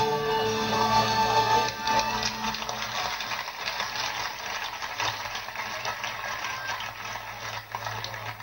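Children's choir and band of guitars, violins and piano end a song on a held final chord, which stops about two seconds in. Audience applause follows for the rest of the time.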